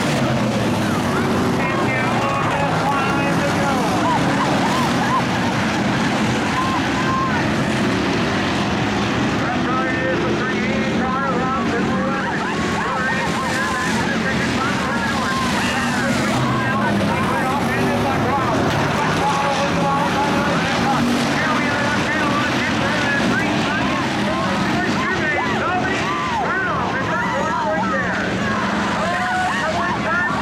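A pack of hobby stock race cars running at racing speed on a dirt oval, their engines revving up and down throughout as the cars pass and overlap, with voices mixed in underneath.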